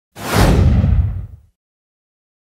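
Whoosh sound effect of a logo intro: a sudden rushing hiss over a deep rumble, the hiss fading first and the rumble stopping about a second and a half in.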